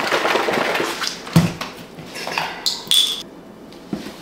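Milk carton and plastic shaker cup handled on a kitchen counter while a protein shake is mixed: a hiss for about the first second, a sharp knock about a second and a half in, then light clatter with a brief high squeak near three seconds and a click at the end.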